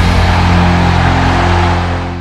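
Closing hit of a loud rock-style channel intro jingle: a sustained, distorted chord with a steady low drone, beginning to fade near the end.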